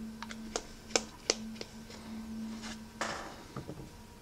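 Light, sharp clicks and taps from small fly-tying tools being handled and set down, about seven in all and irregularly spaced, over a faint steady low hum.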